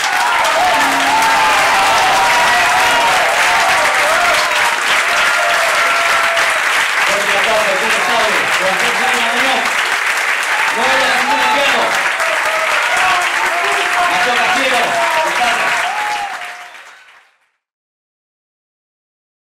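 Audience applauding, with voices calling out and cheering over the clapping. The applause fades away near the end.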